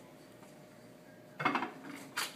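A short metallic clatter about one and a half seconds in: the metal ring stand being handled.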